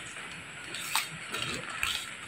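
Faint steady hiss of rain in the background, with a couple of small clicks and rustles.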